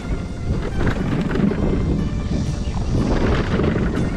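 Wind buffeting the microphone over the rattle and knocks of an electric scooter jolting along a potholed dirt track, its suspension working over the bumps.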